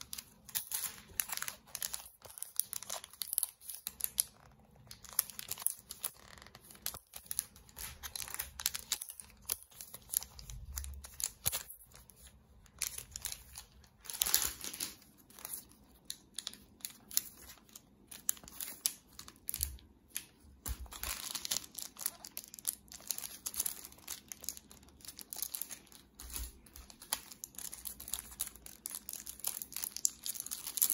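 Clear plastic bags around bundles of banknotes crinkling and rustling as they are handled and turned over, in irregular crackles that come and go.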